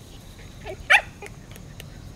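A Shiba Inu giving one short, sharp bark about a second in, just after a fainter yelp.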